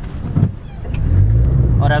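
Car engine and road noise heard inside the cabin of a moving car: a steady low rumble, with a brief thump just under half a second in and the engine note swelling a little about a second in.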